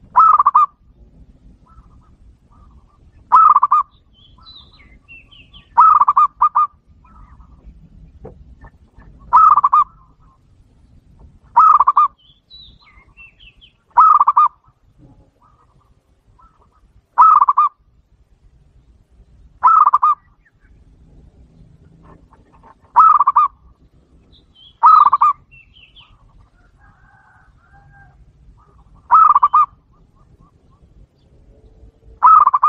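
Zebra dove (perkutut) cooing: about a dozen short, loud calls repeated every two to three seconds, one of them doubled.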